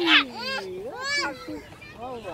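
Young children's high-pitched voices: a loud squeal right at the start, then two shorter gliding calls.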